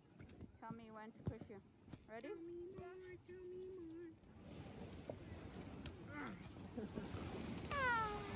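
Faint people's voices calling out on a snow-tubing hill. There is a short call about a second in, a long held call from about two to four seconds, and a falling squeal near the end.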